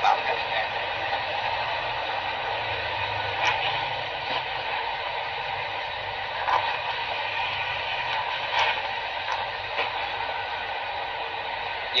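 Steady running noise from inside a moving truck's cab, heard thin and hissy as if through a small speaker, with a faint low hum and a few light clicks.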